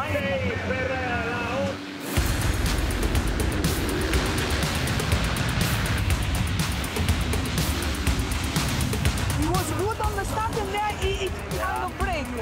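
A full field of motocross bikes launching off the start line together, many engines at full throttle at once, coming in suddenly about two seconds in and carrying on.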